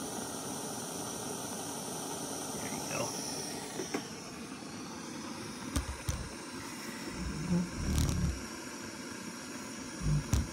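Lightweight BRS-3000T-style canister gas stove burning under a pot of water with a steady hiss. A few dull knocks and bumps come from about six to eight seconds in.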